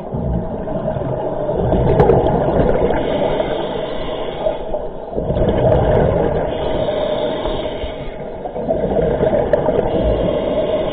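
Scuba regulator breathing heard underwater through a camera housing: rumbling bursts of exhaled bubbles alternate with a hissing inhale, changing over every few seconds, over a steady hum.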